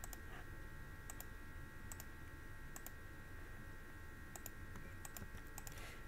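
Faint, scattered clicks of a computer keyboard and mouse, several in quick pairs, over a faint steady electrical whine.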